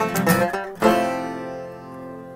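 DADGAD-tuned acoustic guitar and Irish tenor banjo playing the last quick notes of a jig, then striking a final chord together a little under a second in that rings out and fades.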